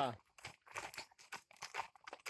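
A voice trailing off at the start, then a quick irregular run of crunching clicks, several a second.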